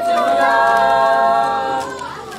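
Small mixed group of young male and female voices singing a Karen Christian song a cappella, holding a long sustained chord that tails off near the end.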